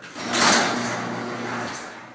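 Electric garage door opener running briefly: a steady motor hum under the noise of the sectional door moving. It is loudest just after it starts, about a quarter second in, and cuts off shortly before two seconds.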